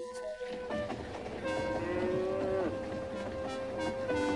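A cow mooing in one long low call that drops in pitch as it ends, over instrumental music holding a steady note.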